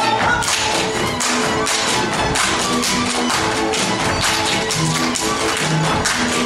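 Live Hungarian folk dance music with sustained string notes, over a rapid, even run of sharp taps from the dancers' footwork.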